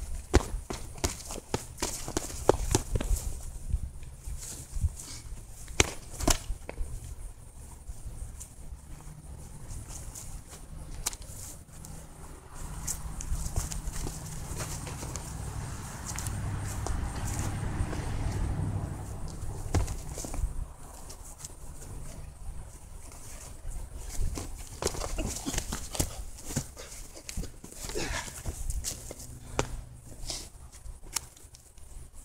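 Boxing gloves smacking punch mitts in quick runs of combinations, with footsteps shuffling on grass. The strikes stop for a stretch in the middle, where a low steady hum is left.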